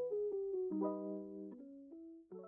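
Background music: soft piano playing a slow melody over chords, a few struck notes each second that ring and fade.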